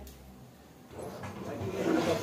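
Quiet cooking sounds at a gas stove: a fried sandwich lifted out of a frying pan and the pan moved off the burner, the noise building from about a second in.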